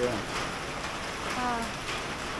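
Heavy hurricane rain falling steadily, an even hiss of rain on the ground and foliage.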